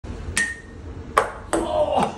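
A ping-pong ball strikes a ceramic dinner plate with a sharp ping that rings briefly. Two more sharp knocks follow about a second later as the ball carries on bouncing.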